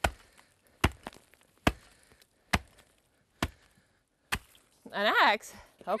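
An axe blade chopping into the ice on a frozen path: six sharp strikes, evenly spaced a little under a second apart. Near the end a child's voice calls out.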